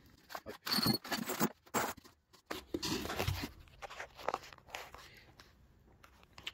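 Folded paper instruction sheets being unfolded and smoothed flat, rustling and crinkling in short, irregular bursts.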